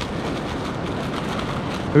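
Steady rushing wash of surf on the beach, with the rustle of a plastic zip-lock bag being shaken to coat fish fillets in flour.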